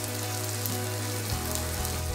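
Capsicum and green chilli pieces frying in oil in a pan, a steady sizzle with a low hum underneath.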